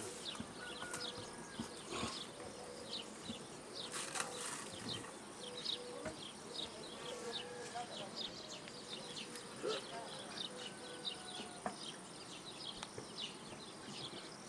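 Honeybees buzzing around their hives: the steady hum of many bees at once, with short high chirps scattered over it.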